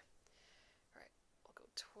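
Near silence with a faint soft sound about halfway through; quiet speech begins right at the end.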